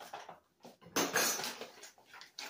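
Granulated sugar being poured from a paper sugar bag, with light clicks of a metal measuring cup, then a loud rustle of the paper bag about a second in that lasts about half a second.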